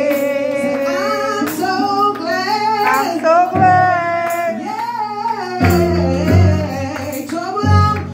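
A woman sings a gospel song into a microphone over instrumental accompaniment. Deep bass notes come in about three and a half seconds in and again from about five and a half seconds.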